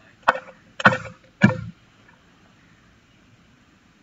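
Three sharp knocks about half a second apart, from something handled close to the microphone.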